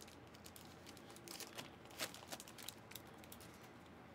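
Near silence: room tone with a few faint, scattered clicks and light handling rustles, one slightly louder click about two seconds in.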